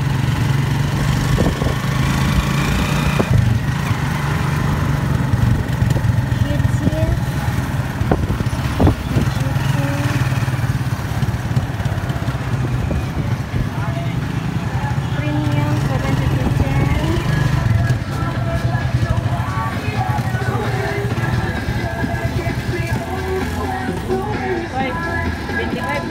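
Small motorcycle-type engine of a motorized tricycle running steadily, with street traffic around it, mixed with voices and music.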